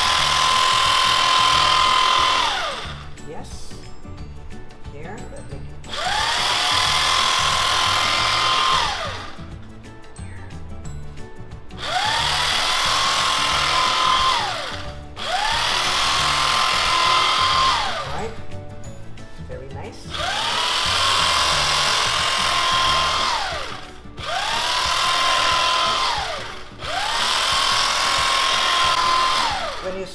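Electric carving knife run in seven bursts of two to three seconds as it saws slices off a soft bread loaf. In each burst the motor whine rises in pitch as it spins up, holds steady, and drops away as it is switched off.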